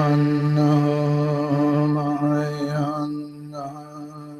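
A chanted, mantra-like vocal line held over a steady low drone. The voice fades out about three seconds in, and the drone carries on more quietly.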